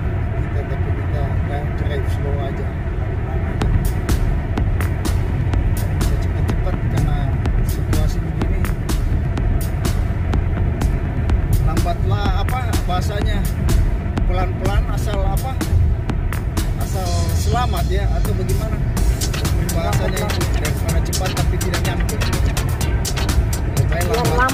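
Steady road and engine noise inside a car cruising on a highway, with background music and a singing voice over it.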